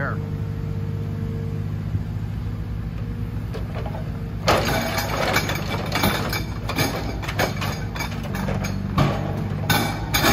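Forestry forwarder's diesel engine running steadily under the working crane, with a faint steady higher tone over it. About four and a half seconds in, a run of irregular knocks and clatter sets in and continues over the engine.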